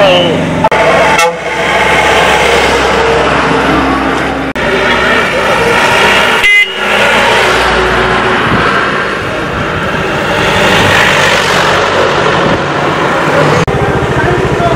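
Road vehicles driving past, a mini-truck and a bus, with engine and road noise and horns honking.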